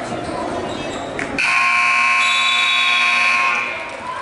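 Gymnasium scoreboard buzzer sounding once, a loud steady buzz of about two seconds starting about a second and a half in, over crowd chatter in the hall.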